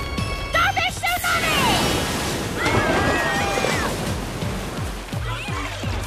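Cartoon soundtrack: background music under shouting, yelling voices and a rush of splashing water.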